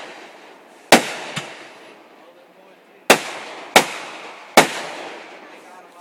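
Aerial fireworks bursting: a loud bang about a second in with a smaller pop just after, then three bangs in quick succession between about three and four and a half seconds in, each trailing off in an echo.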